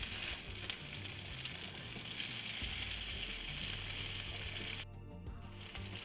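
Braised beef short ribs searing in hot bacon fat in a non-stick frying pan: a steady sizzle that drops out briefly about five seconds in.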